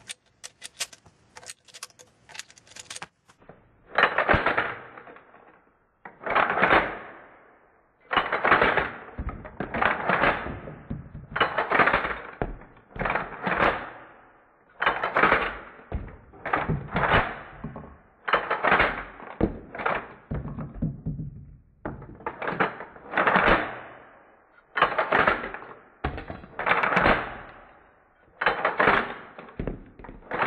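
Shotgun shells loaded one at a time into a Remington 870 Express's extended magazine tube, each going in with a few sharp metallic clacks and a brief rattle, one about every second or two. A few light ticks come first, as the gun is handled.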